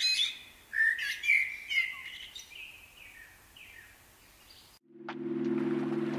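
Small birds chirping and singing, the calls thinning and fading away over about four seconds. About five seconds in, music starts suddenly with a held low chord and light ticks.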